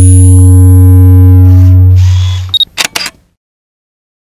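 Studio logo sound effect: a loud, deep sustained bass tone with higher steady tones over it, dying away after about two and a half seconds, followed by a quick run of camera-shutter clicks.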